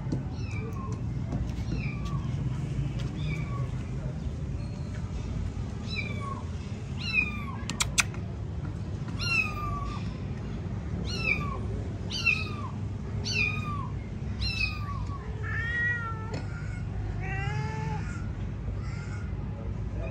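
A kitten mewing over and over in short, high-pitched calls that each fall in pitch, about one a second. Two longer, lower meows come near the end, and there is a brief sharp click about eight seconds in.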